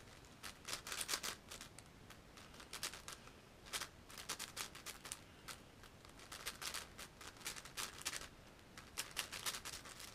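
Plastic layers of a MoYu AoFu WRM 7x7 speedcube clicking and clacking as it is turned fast. The turns come in irregular flurries of quick clicks with short pauses between them.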